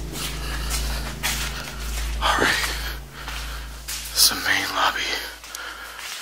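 Breathy whispering voice sounds over a steady low hum that fades out near the end.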